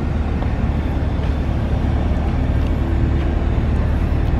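A steady low rumble that holds even throughout, with no sudden events.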